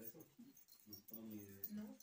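Quiet, hesitant speech: a man's voice trailing off in a pause between phrases, with faint low murmurs.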